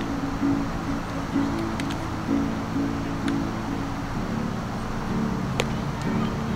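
Music of strummed guitar chords, changing about once a second over a steady hiss, with a few sharp clicks.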